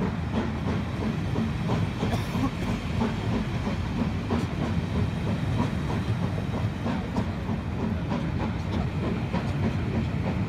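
Steam-hauled passenger train's coaches rolling on the rails as the train pulls away: a steady rumble with irregular clicks of wheels running over the track.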